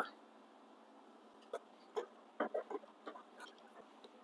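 A few faint, scattered light clicks and taps, with quiet in between.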